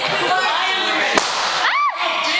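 A balloon bursting with a single sharp crack a little over a second in, over crowd chatter. Near the end comes a short high squeal that rises and then falls.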